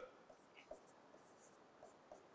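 Faint scratching of a pen writing on a board, a few short strokes over near silence.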